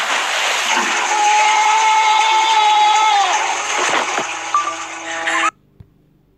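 Cartoon sound effect of a toilet flushing with water splashing, as a head-first toilet dunk (a swirly), with a long held cry over it that falls away about three seconds in. It cuts off suddenly shortly before the end.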